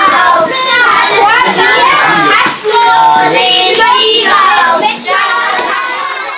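A group of young children chanting and shouting together, loud, in phrases broken by short pauses about two and a half and five seconds in.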